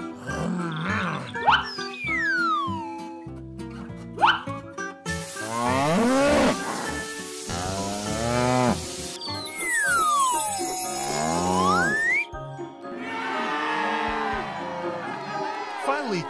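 Cartoon soundtrack: light children's background music under sound effects. A falling slide-whistle glide comes about two seconds in. A cartoon cow moos over a hiss of spraying water around the middle. Near the end a long slide-whistle glide falls and then rises again.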